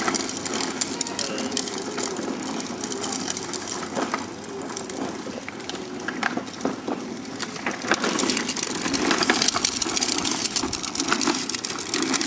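Hard plastic wheels of a child's ride-on toy rolling over concrete: a continuous rough rattle and grinding, louder in the last few seconds.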